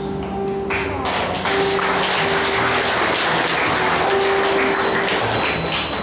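Audience clapping, starting about a second in as a dense, steady patter and fading near the end. Soft background music holds long notes underneath.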